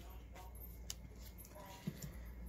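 Faint handling of glossy 2020 Topps baseball cards: a few soft clicks and slides as one card is moved off the front of the stack in the hand.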